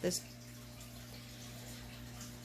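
Quiet kitchen room tone: a steady low electrical hum under a faint hiss.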